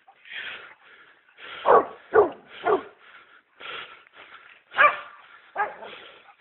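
Pig-hunting dog barking at a wild boar held at bay: three loud barks in quick succession about a second and a half in, then two more near the end. Short rhythmic huffing breaths come about twice a second in between.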